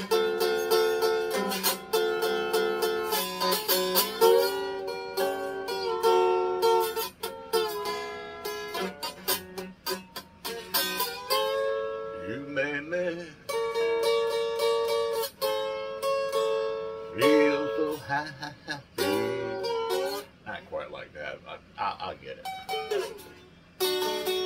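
Small pink acoustic guitar strummed in repeated chords, out of tune and in need of tuning. A man's voice sings along in places without clear words.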